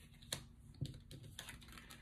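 Faint clicks and taps of handwritten paper cards being laid down and picked up on a cloth-covered tabletop, a handful of short ticks with the sharpest about a third of a second in.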